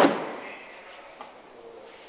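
The prototype Mosquito's automatic leading-edge wing slats are pushed home by hand, all moving together and shutting with one sharp clack that rings briefly in the hangar. A faint click follows about a second later.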